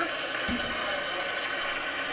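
Steady background noise with a faint murmur of voices, and one sharp click about half a second in.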